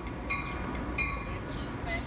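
Metra commuter train rolling into the platform with a low rumble, and a bell dinging about every two-thirds of a second.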